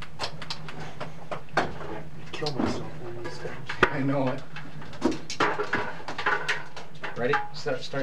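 Scattered sharp clicks and clatter with indistinct, wordless voices over a steady low hum.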